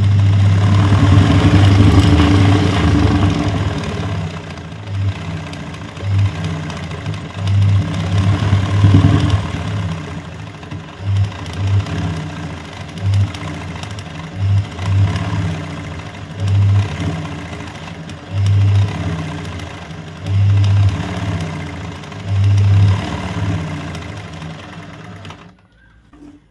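Aari-style chain-stitch embroidery machine running and stitching through hooped fabric, steady for the first few seconds, then in short start-stop bursts of a second or so.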